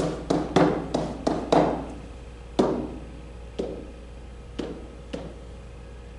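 Pen tapping and knocking against an interactive whiteboard surface during writing. A quick run of sharp taps in the first two seconds gives way to single taps about a second apart.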